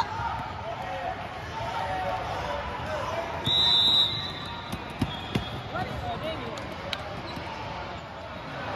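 Basketball game sounds on a hardwood court in a large hall: a ball bouncing and scattered voices of players and spectators. A brief, high, steady squeal comes about three and a half seconds in, and two sharp thumps come around five seconds.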